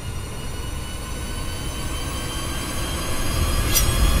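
Suspense drone in a trailer soundtrack: a stack of steady high, squealing tones over a low rumble, swelling in loudness, with a short sharp accent near the end.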